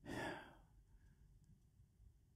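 A man's single audible breath, lasting about half a second at the start, followed by near silence.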